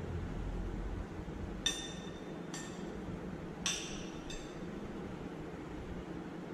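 Metal spoon clinking against a glass plate four times as food pieces are scooped up for weighing, each clink short and ringing, the first and third loudest. A steady low hum runs underneath.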